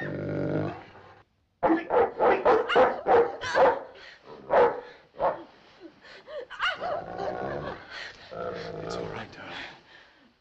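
A dog barking: a quick run of loud, sharp barks, about eight in three seconds, in the first half, followed by quieter, longer sounds.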